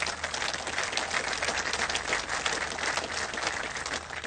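Large audience applauding steadily, a dense even clapping.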